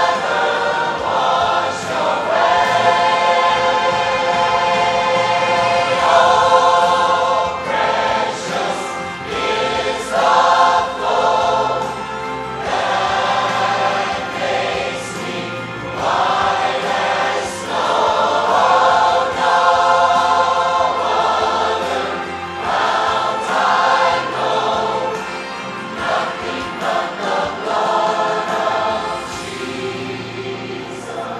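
Large mixed choir of men and women singing a worship song in harmony: long held chords in phrases, with short breaks between them every few seconds.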